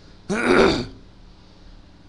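A man clears his throat once: a short burst about half a second long, just after the start.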